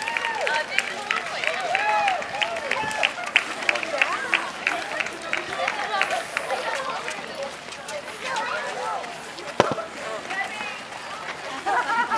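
Chatter of a crowd of walkers passing on a paved street, with many quick sharp taps over the first few seconds and a single sharp click about ten seconds in.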